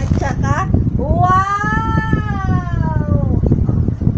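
A high-pitched voice lets out a few short syllables, then one long drawn-out call of about two seconds that rises and then falls in pitch. Low rumbling handling noise runs underneath.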